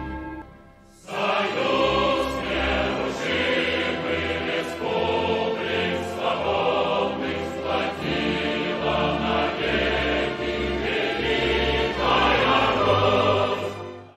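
Choral music: a choir singing over accompaniment, coming in about a second in after a brief dip and cutting off abruptly at the end.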